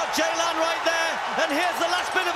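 Mostly speech: a man's raised, excited race commentary, high in pitch, over a steady noise of the stadium crowd.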